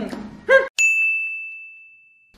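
A single bright ding, a bell-like chime struck about three-quarters of a second in. It rings on one high tone that slowly fades away.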